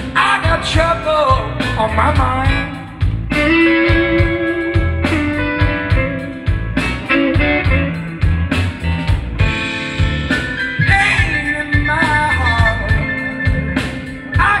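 Live electric Chicago-style blues band playing a song, with electric guitar, bass guitar, keyboard and drums, and a male singer singing over them.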